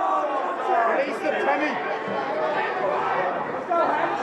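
Several voices shouting and calling over one another during a live rugby match.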